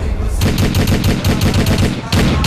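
Rapid machine-gun fire, a fast even rattle of shots starting about half a second in, over a deep steady rumble.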